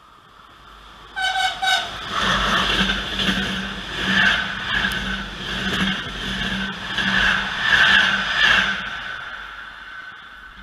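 Passenger train sounding two short horn blasts as it nears, about a second in. It then runs through the station at speed, with a loud rolling rumble and a repeating clatter of wheels over the rails, and fades away near the end.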